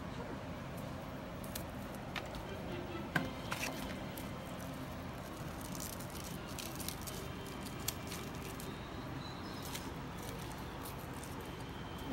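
Quiet room tone with a steady low hum and a few faint, scattered clicks of handling, the sharpest about three seconds in and another near eight seconds.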